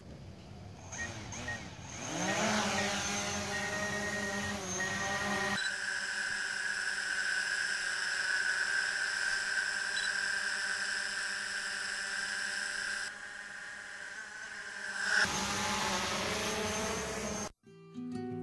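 DJI Mavic quadcopter's motors spinning up with a rising whine, then its propellers holding a steady, high-pitched whine as it lifts off and hovers. The sound cuts off abruptly just before the end.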